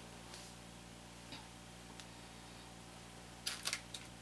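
Light handling noises of bars of soap and the wooden wire soap cutter: a few faint ticks, then a quick cluster of sharp clicks near the end as a bar is set down, over a steady low hum.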